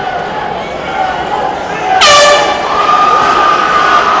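Air horn sounding a loud, sudden blast about halfway through, held as a steady tone to the end, signalling the start of the round, over crowd chatter.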